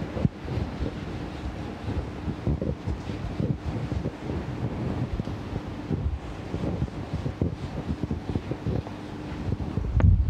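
Whiteboard duster rubbing across a whiteboard in many quick, irregular scrubbing strokes as the board is wiped clean. A faint steady hum runs underneath.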